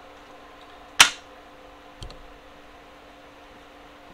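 Two clicks from the RC truck's hinged cage being worked against its steel sliders on the chassis: a sharp one about a second in, then a fainter one with a low thump a second later.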